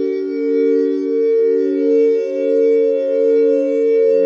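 Experimental electronic music: a drone of overlapping, sustained synthesizer tones in the low-middle range, with single notes stepping to new pitches and the whole chord swelling and fading about every 0.7 s. There are no drums.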